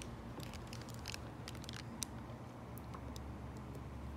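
Faint handling noise: scattered light clicks and taps as the devices and the recording phone are moved about on a table, over a low steady hum.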